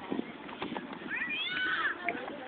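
Distant, high-pitched shouted calls from young soccer players, starting just after a second in, over faint background chatter and field noise.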